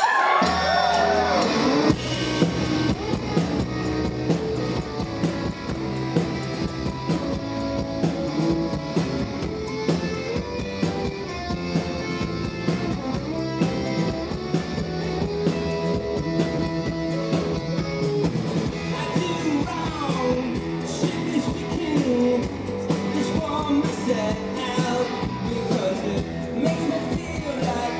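Live rock band playing a song through the venue PA, recorded from the audience: electric guitar, bass and drums, starting right after the spoken introduction, with a few sweeping glides in pitch near the start and again later.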